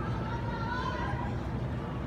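Indistinct background voices talking over a steady low rumble.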